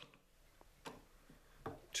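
A few faint, short clicks as a large adjustable wrench is handled and fitted onto the nut on the lathe's headstock spindle; the clicks come a little louder near the end.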